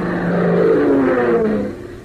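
Propeller airplane engine sound effect: a steady drone whose pitch falls as it fades out near the end.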